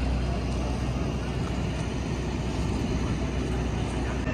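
Steady, low rumble of aircraft engine noise from a plane flying a display.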